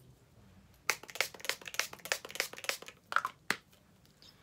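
A quick run of clicks and crinkling from makeup being handled. It starts about a second in and lasts about two and a half seconds.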